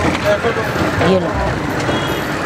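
Street traffic noise running steadily, with brief snatches of voices over it.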